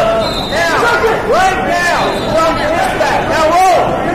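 Several voices shouting and yelling encouragement over the steady chatter of a crowd in a large gym.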